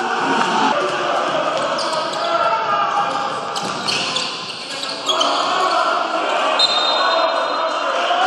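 Basketball game sound in an indoor arena: a ball bouncing on the hardwood court amid crowd voices, with a steady high whistle blast about a second long near the end, typical of a referee's whistle stopping play.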